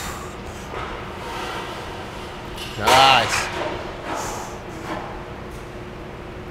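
A man grunts once with strain about halfway through, a voiced effort sound that rises and falls in pitch as he pushes a heavy dumbbell press rep. Faint gym room noise sits underneath.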